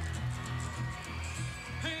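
Background music with a pulsing bass line and held tones.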